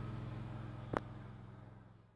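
Engine of a Lincoln Ranger engine-driven welder running steadily, with a single sharp click about a second in, the whole fading out toward the end.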